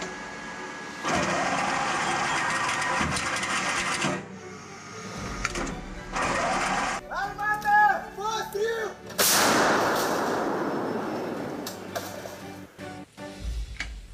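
A 152 mm 2S5 Giatsint-S self-propelled gun firing: a sudden loud blast about nine seconds in that dies away over several seconds.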